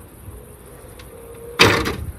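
Power-operated wheelchair ramp unfolding out of a van's side door: a faint steady motor hum, then one loud clunk about one and a half seconds in as the ramp comes down to the ground.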